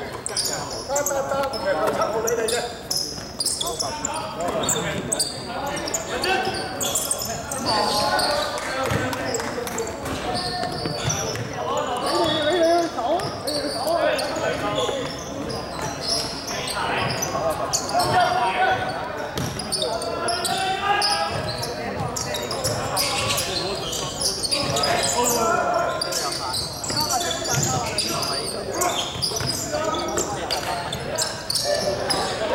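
Basketball bouncing on a hardwood court, with players' and spectators' voices calling and chatting throughout, echoing in a large sports hall.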